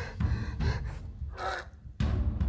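A man gasping and straining for breath while being choked, in about three short gasps, the clearest about one and a half seconds in, over a low rumble.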